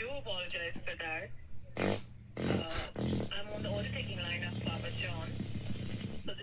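Fart sounds played back from a prank video: a short noisy burst about halfway through, then a long, low, buzzing fart, with a man's voice talking over them.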